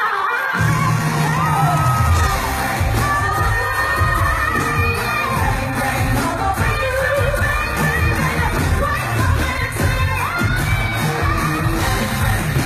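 Live pop concert: a woman singing over a band, with heavy bass and drums coming in about half a second in.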